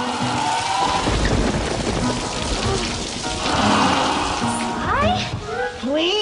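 Thunderstorm sound effect: steady rain with a low rumble of thunder, under music.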